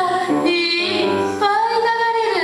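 A young girl's voice singing a melody, ending on a long held note.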